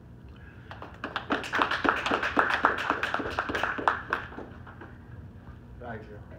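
A small audience clapping by hand, starting about a second in and dying away over the next three seconds or so.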